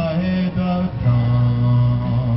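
A man singing a slow Hebrew worship song into a microphone, holding one long note through the second half.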